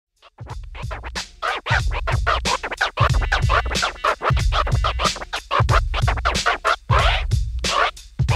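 Turntable scratching: a record pushed back and forth under the needle in quick strokes, several a second, over a deep bass line that comes in and drops out in blocks.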